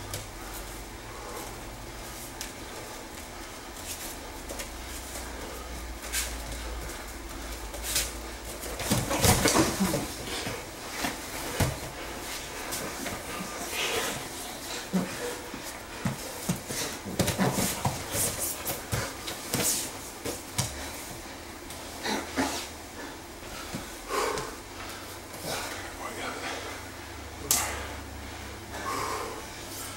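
Two grapplers scuffling and thudding on foam mats, with breathing and grunts; the loudest burst of impacts comes about nine seconds in as they go from standing to the ground, followed by scattered scuffs and knocks as they scramble.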